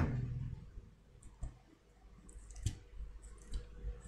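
Quiet room tone with a few faint, scattered clicks and taps at irregular intervals; the sharpest comes a little past halfway.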